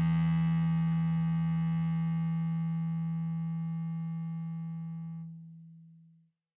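Final distorted electric guitar chord of a hardcore punk song ringing out and slowly fading at the song's end, its bright top dropping away early and the rest dying out about five seconds in.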